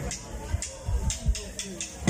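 Live cumbia band's drum kit and percussion playing a few sparse hits and high ticks, with a voice faintly heard, as the song is about to start.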